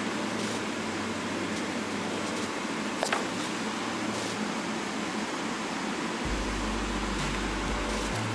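Airliner cabin noise inside a Boeing 777-300ER on the ground before takeoff: a steady rush of ventilation air and engine hum. A deeper rumble joins about six seconds in, and a paper leaflet being handled gives a brief crackle about three seconds in.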